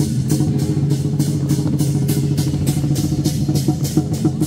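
Chinese dragon-dance percussion: cymbals clashing in a steady beat about three times a second over drumming, with a steady low drone underneath.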